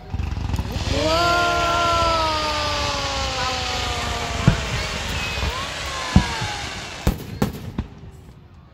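Fireworks: a loud, steady hiss of a ground fountain spraying sparks, then a series of sharp bangs from exploding shells over the last few seconds. A person's long, drawn-out call falls slowly in pitch over the hiss.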